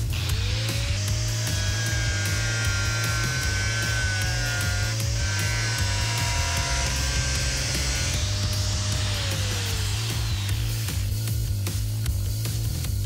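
Angle grinder with a thin cutting disc cutting through the rusted steel of a car's rear wheel arch. The motor whine winds up at the start, sags a little in pitch midway under load, and winds down about ten seconds in. Background music with a steady beat runs underneath.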